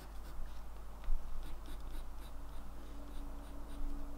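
Graphite pencil sketching on watercolour paper: a run of short, irregular scratchy strokes as a round shape is drawn.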